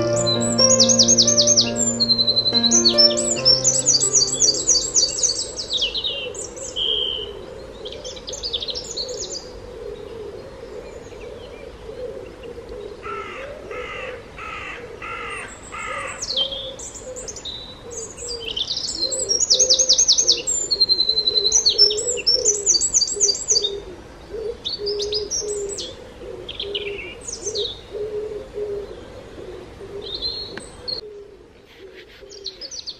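Several birds singing and chirping, with quick high trills and chirps coming and going and a run of harsher repeated calls about halfway through. A soft piano melody fades out over the first few seconds.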